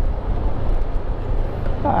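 Yamaha scooter's engine and road noise as a steady low rumble on the riding camera's microphone, while the scooter slows down. A man's voice starts right at the end.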